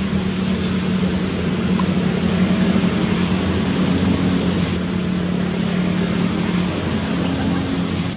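Steady background noise with a continuous low hum, like a distant motor, and no clear monkey calls.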